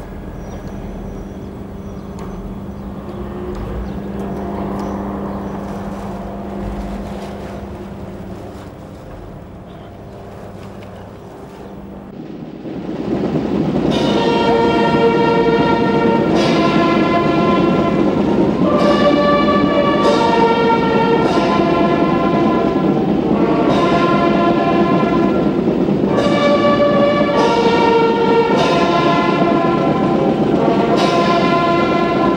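Military brass band playing: a held low chord fades over the first dozen seconds. Then, a little under halfway through, the band comes in loud with full sustained chords that change every second or two.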